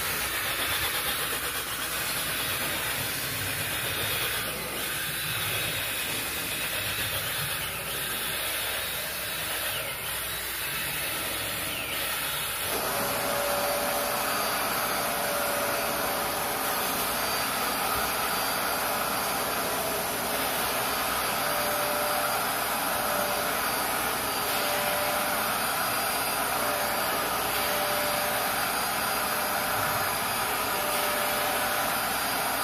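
A cordless drill spins a scrub brush against carpet for about the first thirteen seconds. Then a vacuum extractor starts abruptly and runs steadily with a thin whine while its wand is drawn over the wet carpet.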